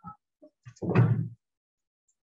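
A short, loud bang about a second in, with a few faint knocks just before it.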